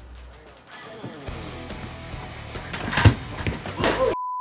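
Background music, with one loud thump about three seconds in.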